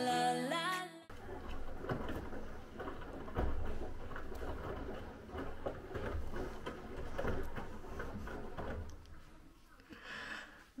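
Beko front-loading washing machine starting its first wash: a steady low rumble of the drum turning, with softer knocks and water moving on top. Before it, music cuts off about a second in.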